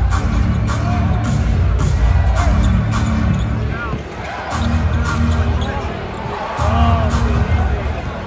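A basketball bounces on the hardwood court during live play, with short sneaker squeaks. Under it runs arena music with a heavy bass line, and crowd voices.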